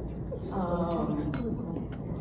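Glassware and tableware clinking three times in about a second, the middle clink the loudest with a brief ring, over low voices.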